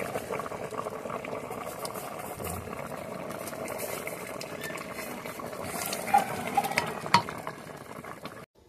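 Beef stew bubbling in an open metal pot while a wooden spatula stirs it, a steady wet crackle. A few sharp knocks near the end as the spatula hits the pot.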